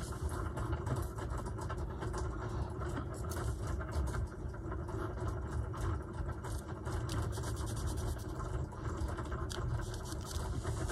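Hands rubbing and pressing glued paper scraps onto a journal page, with irregular rustling and light scuffing, over a steady low mechanical hum from an electronic craft cutting machine running in the background.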